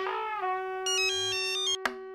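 Electronic background-score cue: a single held synthesizer note, with a quick, tinkling run of high stepping notes about a second in. It cuts off with a click just before the end.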